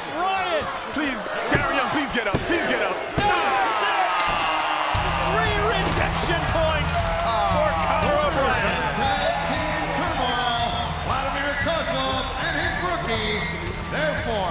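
Thuds on the wrestling ring mat during the pin count, over a shouting crowd. Music starts about five seconds in and runs on under the crowd.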